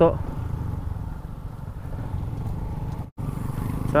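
Motorcycle engine running with wind and road noise while riding slowly over a rough dirt road, heard as a steady low rumble. The sound drops out briefly about three seconds in.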